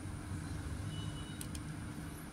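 A quiet, steady low background rumble with a faint constant hum and no distinct event.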